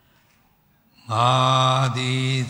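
Near silence, then about a second in a male Buddhist monk's voice begins chanting loudly in a steady, sustained monotone.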